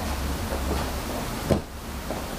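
Grapplers moving on a padded gym mat: one sharp slap about one and a half seconds in, over a steady low hum.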